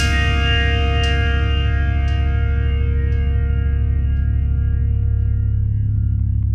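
Instrumental ending of an emo-rap song: a held, effects-laden guitar chord rings over a steady bass and slowly thins out, with a few faint soft ticks about once a second early on.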